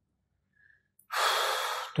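Near silence, then about a second in a man's sharp in-breath close to the microphone, lasting just under a second.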